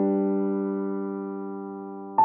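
Slow background piano music: a single held chord rings and slowly fades.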